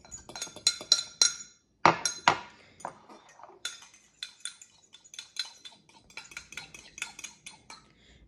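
Metal spoon stirring water and gelatin in a Pyrex glass measuring cup, clinking against the glass many times in quick, uneven taps. Two heavier knocks come about two seconds in.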